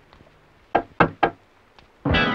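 Three quick knocks, about a quarter of a second apart.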